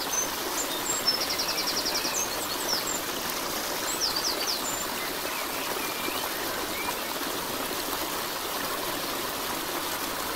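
Steady rushing of flowing water, like a stream, with high bird chirps over it: a quick trill of about a dozen notes about a second in, and a few short calls around four seconds in.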